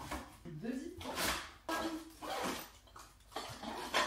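Rustling and light knocks as food containers are packed into a fabric tote bag, with a sharper rustle about a second in. Soft vocal sounds, like murmuring or humming, come in between.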